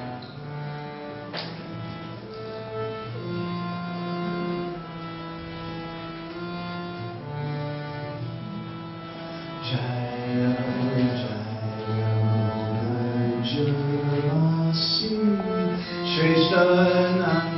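Slow instrumental melody of long held notes, the opening of a devotional song sung in a raga; it grows fuller and louder about ten seconds in.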